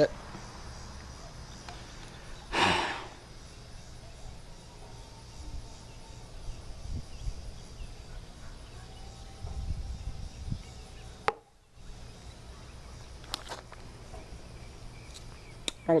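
Handling noise from a phone being fiddled with: a brief rustle a few seconds in and a few sharp clicks later, over a low steady background hum.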